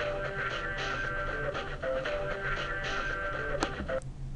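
Adobe Connect's audio setup test sound: a short piece of music plays evenly for about four seconds and then stops, the check that the computer's sound output is working.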